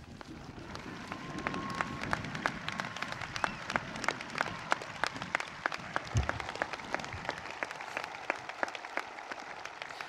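Outdoor crowd applauding: dense, steady clapping that builds about a second in.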